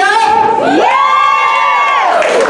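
A woman's voice through a handheld microphone and PA gives a whoop: a short vocal sound, then a call that glides steeply upward and is held high for about a second before dropping away.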